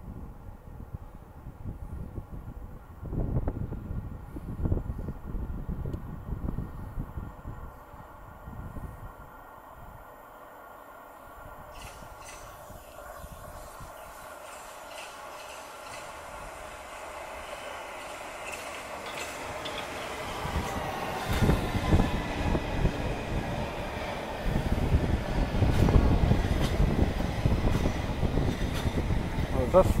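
London Underground S-stock electric train approaching and drawing into the platform: its rumble and motor whine grow steadily louder over the second half, loudest as the carriages run past close by. A spell of low rumbling comes a few seconds in, before the train is heard.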